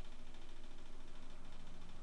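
Steady low background noise: microphone hiss and room hum, with no distinct event.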